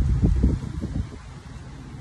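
Wind buffeting a phone microphone: a gusty low rumble, strongest in the first second, then easing off.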